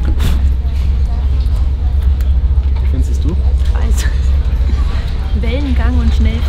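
Steady low drone of a high-speed ferry's engines heard inside the passenger cabin, with brief voices over it near the end.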